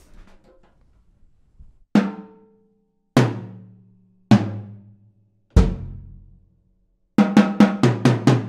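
Slingerland 20/12/14 drum kit with mahogany-poplar shells and a Craviotto titanium snare, in its low tuning, being played: four single hits about a second apart, each left to ring and each lower than the last. A fast run of strokes, about five a second, starts near the end.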